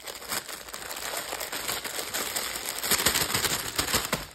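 Clear plastic packaging bag crinkling steadily as hands handle it and open it.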